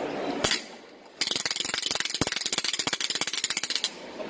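Hand-spun wooden ratchet rattle: one click, a short pause, then a fast run of clacks for nearly three seconds as it is swung round.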